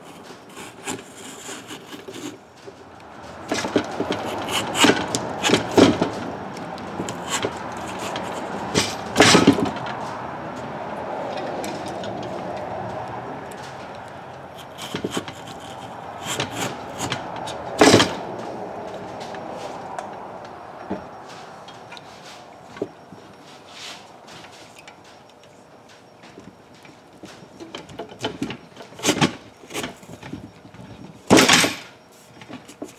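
Utility knife slicing and scraping lengthwise along an old fishing rod grip, cutting slits to strip it off the blank, with a few sharp knocks in between.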